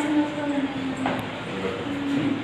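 A voice holding one long, slightly falling note for about a second and a half.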